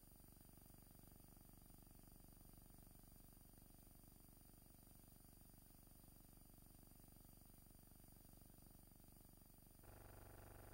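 Near silence: a faint, steady hum and hiss where the film's soundtrack is missing, shifting slightly in character just before the end.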